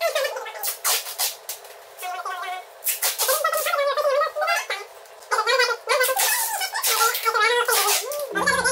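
Packing tape being pulled off the roll in repeated screeching, rasping pulls, with crackling of plastic stretch wrap as it is taped down.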